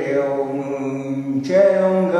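An elderly man singing unaccompanied in a slow chant, holding one long low note and then moving up to a higher held note about one and a half seconds in.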